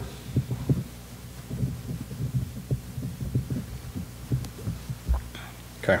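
Low, muffled voices murmuring in the room over a steady electrical hum, with a dull thump about five seconds in.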